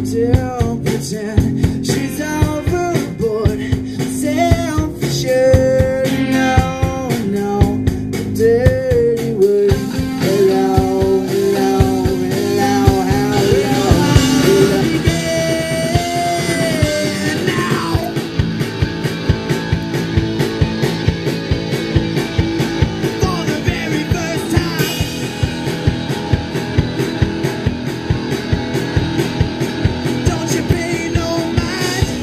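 A live rock band playing: electric guitar, bass guitar and drum kit, with a male lead vocal, loud and steady throughout.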